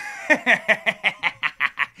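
A man laughing: a run of short, even bursts of laughter, about five a second.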